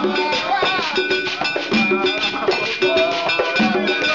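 Live Afro-Cuban Lucumí ceremonial drumming: hand drums in a steady rhythm with a ringing metal bell, under voices singing.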